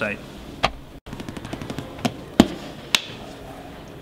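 Quiet room noise broken by several sharp clicks, the loudest about two and a half seconds in, with a brief dead dropout about a second in.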